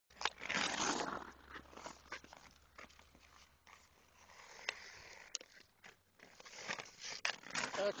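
Ice hockey skates scraping across outdoor ice and a stick clicking against the puck, with a loud scrape of blades in the first second and a sharp crack of the shot near the end.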